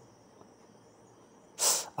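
Near silence with a faint steady high hum, then a single short, sharp hiss about one and a half seconds in, as the hot-water tap is opened.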